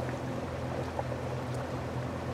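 A pontoon boat's motor running steadily underway, a low even drone.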